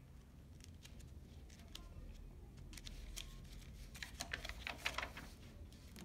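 Soft rustling and light clicks of a picture book's paper pages being handled and turned, busiest about four to five seconds in.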